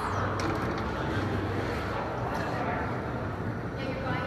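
Indoor public-space ambience: indistinct background voices over a steady low hum.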